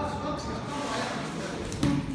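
Voices of people talking in a large hall, with one sharp thud near the end.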